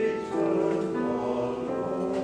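A large mixed choir of men and women singing sustained chords, the harmony shifting shortly after the start and again near the end.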